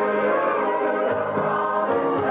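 Choir of men's and women's voices singing a gospel song in harmony, holding long sustained chords.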